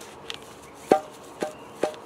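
Steel armour plates inside a plate carrier knocking against each other three times as the carrier is shaken, each a short clack with a brief metallic ring. The carrier has no padding between the plates, so they clang together whenever it is jostled.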